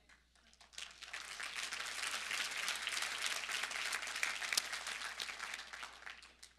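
Church congregation applauding, with many hands clapping: it swells about a second in, holds steady, and fades out near the end.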